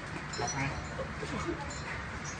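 Quiet, indistinct voices with a few short, high chirps in the first half.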